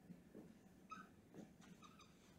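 Faint squeaks and strokes of a dry-erase marker writing on a whiteboard: a few short, quiet squeaks, one about a second in and another near the end, over near-silent room tone.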